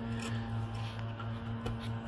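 A flat-head screwdriver tip scrapes and clicks faintly against the metal retaining clip on a hood gas strut's ball-socket end fitting, a few small clicks over a steady low hum.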